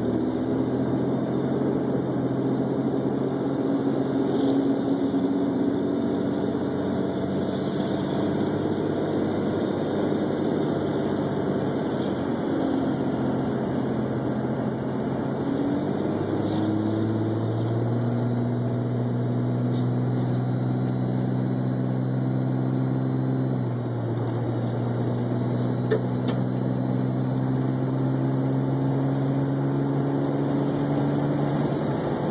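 Car engine and road noise heard from inside a moving car: a steady low engine hum with tyre rumble. The engine note rises around the middle and shifts again a little later.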